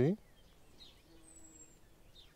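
Quiet garden ambience with faint birdsong: a thin, high, falling whistle about a second and a half in, and a few soft chirps. A brief faint hum sits underneath.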